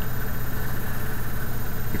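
Steady low hum with nothing else over it.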